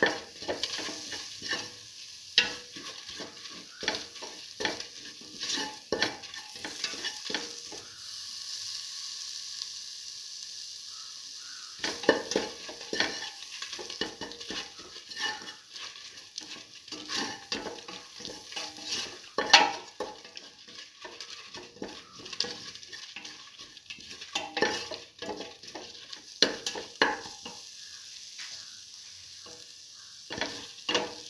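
A spoon scraping and knocking against a metal pan as a spiced mixture is stirred, with oil sizzling steadily underneath. The stirring stops for a few seconds about a third of the way through, leaving only the sizzle.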